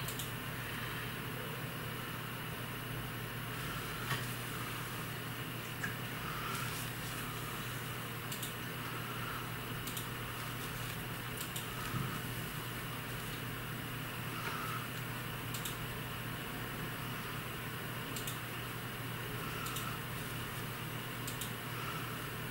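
A steady low hum of room noise, with faint soft rustles and a few small clicks as a metal darning needle and yarn are worked back and forth through knitted fabric to weave in a yarn end.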